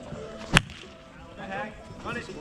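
One sharp smack of a plastic wiffle ball at home plate, about half a second in, during a pitch and swing. Faint voices follow.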